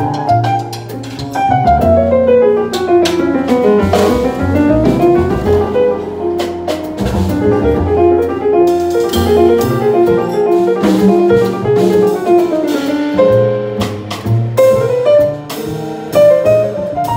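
Live jazz trio playing a piece in an Armenian folk idiom: grand piano with fast runs, one long descending run that turns and climbs back up in the middle, over double bass and drum kit with cymbal strokes.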